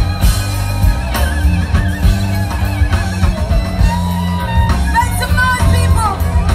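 Live blues band playing loudly: drum kit, electric bass and violin, with a woman singing over the band.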